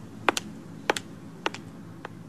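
Footsteps on a hard floor: three steps about half a second apart, each a sharp double click of heel then toe.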